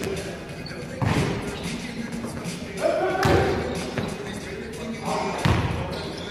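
Basketball thuds ringing through a large gym hall: three loud hits, about a second in, past three seconds and near the end, with players' voices calling out between them.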